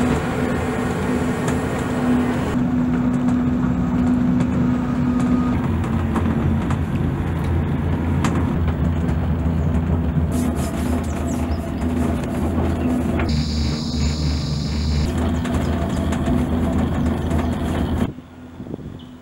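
Steady low hum and rumble of a Skyrail Rainforest Cableway gondola cabin riding along its cable, with a brief hiss about three-quarters of the way through; the sound cuts off suddenly at the end.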